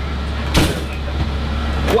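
Fire rescue truck running, a steady low drone heard from inside its patient compartment, with a single short knock about half a second in.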